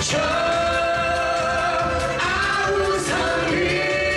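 A man singing a Korean song over backing music with a steady beat, holding long notes that change pitch about two seconds in and again near three seconds.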